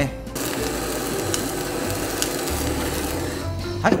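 Handheld gas torch running with a steady hiss as it sears the scored skin of fish fillets for aburi sashimi, with two brief crackles, cutting off just before the end.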